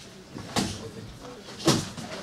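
Padded boxing gloves landing punches in sparring: two sharp smacks about a second apart, the second louder.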